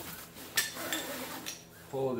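Metal strap buckle clinking sharply about half a second in, with a lighter tick about a second later, over the rustle of the strap being handled.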